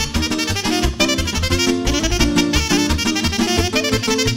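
Live Banat folk dance music: a saxophone plays a quick melody over a band backing with a steady bass beat, as an instrumental passage without singing.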